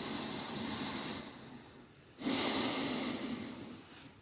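A person breathing deeply and audibly close to the microphone: two long breaths, the second louder and starting abruptly about two seconds in.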